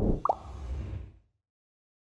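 Logo sound effect: a rush of noise over a deep rumble, with a short falling bloop about a quarter second in, fading out a little over a second in.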